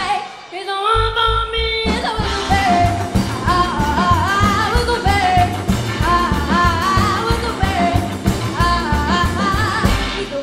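Live rockabilly band: a brief break right at the start and a single held note, then the full band comes back in about two seconds in with a driving rhythm of upright bass and drums, electric guitar, and a woman singing over it.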